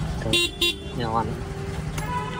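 Electric horn of a Yamaha Ray ZR 125 scooter beeping twice in short quick taps, sounded from the left handlebar switch.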